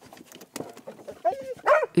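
Search-and-rescue dog giving two short, high yelps in the second half, after a second of faint rustling and clicks.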